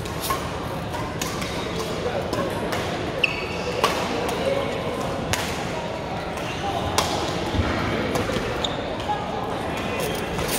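Badminton rackets striking a shuttlecock, several sharp cracks a second or more apart, over steady chatter of voices echoing in a large sports hall. A brief high squeak comes about three seconds in.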